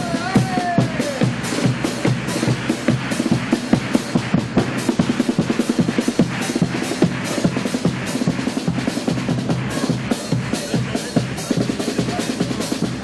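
Carnival murga band playing an instrumental passage: bass drum and snare drum beating a steady rhythm under strummed guitar.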